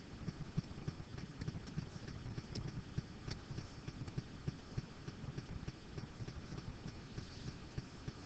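Faint, irregular tapping and rubbing of a stylus writing and highlighting on a digital pen surface, a few knocks a second.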